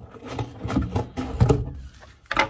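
Scissors cutting through a corrugated cardboard box flap: a series of irregular crunching snips and knocks.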